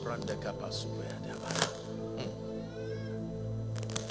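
Soft background music of held, sustained chords, with faint voices heard over it.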